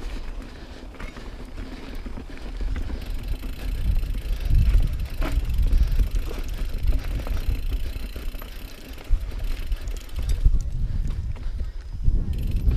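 2018 Norco Range mountain bike rolling down a rocky dirt trail: tyres rumbling over dirt and stones, with scattered clicks and knocks from the bike. The rumble grows louder about four seconds in as the bike picks up speed.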